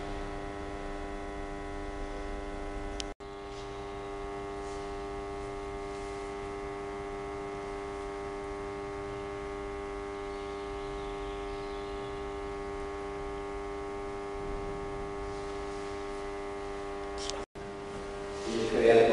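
Steady electrical mains hum, a stack of steady tones without change, cut by two brief dropouts, about three seconds in and near the end.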